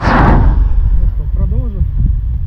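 Street traffic: a car passing close by, loudest in the first half-second, over a steady low rumble. A voice speaks briefly near the middle.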